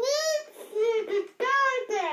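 A toddler singing into a toy microphone: three short, high-pitched sing-song phrases with sliding pitch, the last one gliding down.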